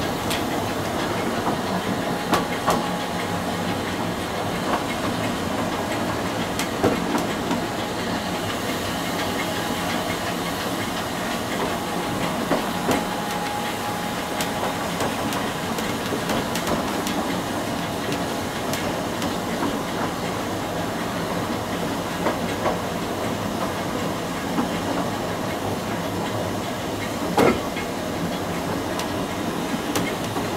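Narrow-gauge steam train rolling slowly, with a steady hiss of steam from the locomotive and scattered clicks and knocks from the wheels over the rail joints. The sharpest knock comes near the end.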